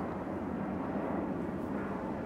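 A steady low background drone of distant engine noise, with no sudden events.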